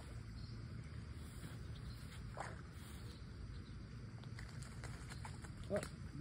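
Quiet outdoor ambience with a steady low rumble, one short sound about two and a half seconds in, and a few faint clicks near the end.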